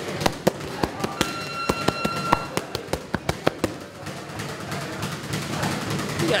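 Boxing gloves smacking against punch mitts in quick, uneven combinations, about fifteen sharp hits over three and a half seconds that stop a little past the middle. A steady high tone sounds for about a second among the hits.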